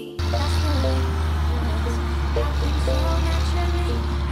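Challenger MT765C tracked tractor's diesel engine running steadily and loud with a deep hum while it pulls a land-leveling implement. The engine sound cuts in suddenly just after the start, and music plays over it.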